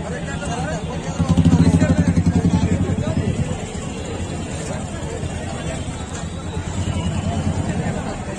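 Crowd chatter over a vehicle engine running close by; the engine gets louder about a second in for roughly two seconds, then settles back.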